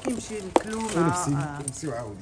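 Metal bangles clinking as they are handled, with one sharp click about half a second in, over people talking in the background.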